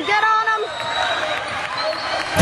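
Basketball bouncing on a court, with people's voices.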